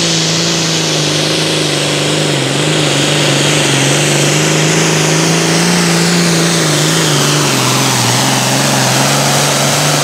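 Modified John Deere 8410 Super Farm pulling tractor's turbocharged diesel engine running flat out under load as it drags the pulling sled: a loud, steady drone with a high whine above it. The engine pitch sags a little in the last few seconds as it loads down.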